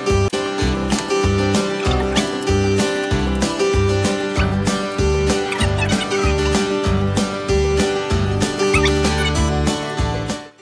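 Background music with a steady beat, about two beats a second, under a held note.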